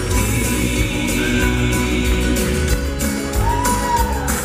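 Southern gospel quartet music played live, with piano and bass guitar under the singers' voices. A short high note bends up and back down near the end.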